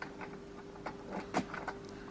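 Key being worked in a flat's door lock: a quick string of small metallic clicks and key jingles, the loudest click about one and a half seconds in.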